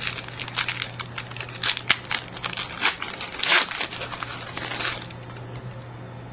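A trading card pack's wrapper being torn open and crinkled by hand: a run of sharp, irregular crackles that stops about five seconds in.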